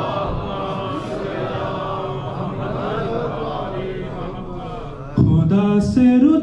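Several voices chanting the refrain of an unaccompanied Urdu devotional poem together, their pitches wavering and overlapping. About five seconds in, a single male reciter comes in much louder, singing the next line into a microphone.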